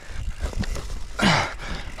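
Mountain bike descending a dirt trail: tyres rolling over dirt with the bike rattling, and a short, louder rush of noise a little past halfway.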